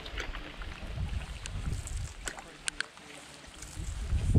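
Canoe being paddled along a river: water sounds from the paddle strokes with a few sharp clicks in the middle, over an uneven low rumble of wind on the microphone.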